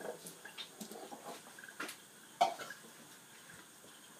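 A man coughing a few short times, the loudest about two and a half seconds in, from the burn of chilli powder in his mouth and throat.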